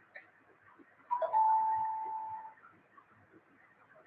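A single chime-like tone about a second in, held for just over a second and fading away.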